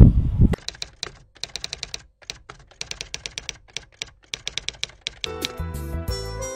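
Rapid, irregular typing clicks in short runs with brief pauses, like a typewriter or keyboard sound effect. Music starts about five seconds in.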